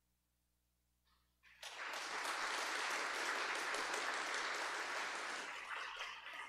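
A church congregation applauding: the clapping breaks out about a second and a half in, holds steady, and starts to die down near the end.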